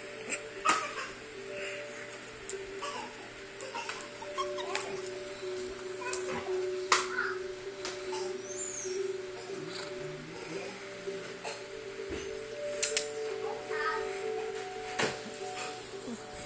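Two dogs play-wrestling, with sharp knocks and clicks scattered through the scuffle, over background music with steady held tones.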